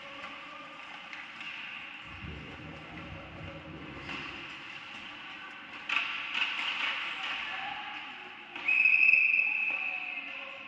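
Live ice hockey play in an indoor rink: skates scraping the ice, a sharp stick-and-puck clack about six seconds in, and players' calls. Near the end a referee's whistle blows one steady, loud blast lasting over a second.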